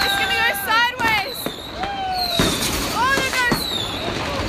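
Street fireworks: whistling fireworks gliding up and down in pitch, mixed with about five sharp firecracker bangs.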